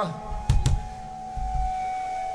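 Stage noise between songs through a live PA: an electric guitar amplifier holds a steady ringing tone, two quick sharp knocks come about half a second in, and a short low thud follows a little later.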